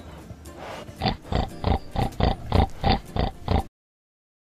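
Pig grunting: a quick run of about nine short grunts, roughly three a second, that cuts off suddenly near the end.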